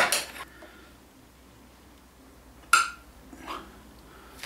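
A sharp metallic clink with a short ring about two and a half seconds in, then a fainter knock a little under a second later: a screwdriver knocking on a mitre saw's laser housing while its adjusting screws are worked.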